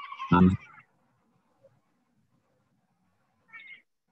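A brief, honking synthetic voice, typical of a screen reader echoing a just-typed key, ending in a short low thump within the first second. Then near silence, with a faint short sound near the end.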